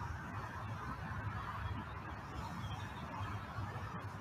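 Outdoor field ambience: a steady low wind rumble on the microphone with a faint haze of distant bird calls.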